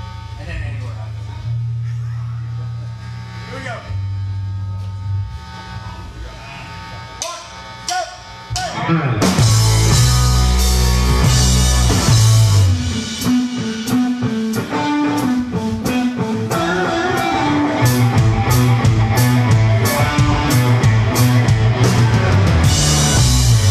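Live rock band starting a song: a quieter intro of held low bass notes and electric guitar, then about nine seconds in the drums and full band come in loudly.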